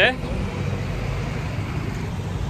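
Steady street traffic noise, mostly low in pitch with a fainter hiss above, with no distinct events standing out.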